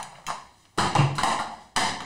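A handheld stick prop being swung and handled: a few sharp taps and knocks, then a louder, noisier sound lasting about a second, and another short burst near the end.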